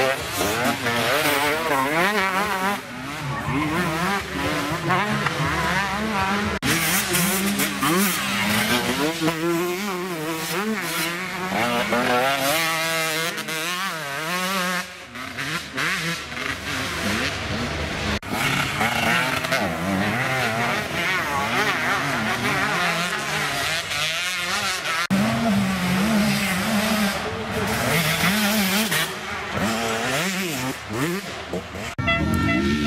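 Enduro dirt-bike engines revving hard, the pitch rising and falling quickly as the throttle is worked on a steep, loose dirt climb.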